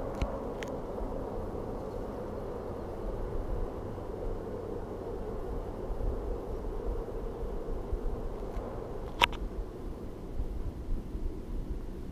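Steady low outdoor rumble, with a single sharp click about nine seconds in.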